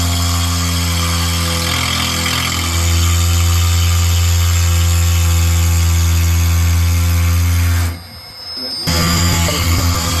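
Mini CNC mill's spindle running steadily as a 6 mm single-flute end mill cuts a plastic block, a steady whine with a slight change in pitch about two seconds in. About eight seconds in the sound drops away and music takes over.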